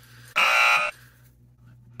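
An electronic buzzer sound effect: a single loud buzz about half a second long, starting about a third of a second in.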